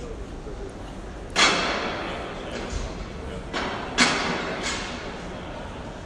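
Two loud sudden thuds, about a second and a half in and again near four seconds, each ringing on in the echo of a large hall, over a background murmur of voices.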